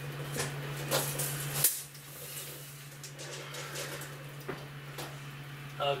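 Steel tape measure being extended up a wall to the ceiling, with a few clicks and knocks of the tape and its case, the loudest about one and a half seconds in, over a steady low hum.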